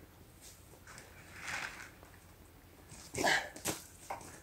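A grappling hook on a rope being thrown up into a tree: a soft whoosh about a second in, then near the end a short grunt-like breath and a sharp knock as the hook lands among the branches.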